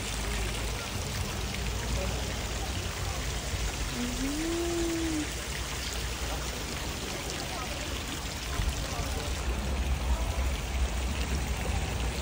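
Water from small stone spouts pouring steadily into a pond, splashing and trickling, with a short hummed voice sound about four seconds in.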